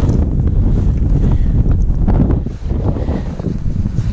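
Wind buffeting the microphone outdoors on open ice: a steady low rumble, with a few light clicks and knocks.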